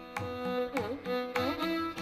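Carnatic violin playing a melody in raga Gowla, with sliding ornamented notes: one deep swoop down and back up about halfway through. A steady drone sounds underneath, and regular percussion strokes keep time.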